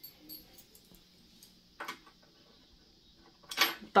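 A few faint metallic clicks from a small screwdriver-charm keychain being handled, with one clearer click a little under two seconds in and a short noisy burst near the end.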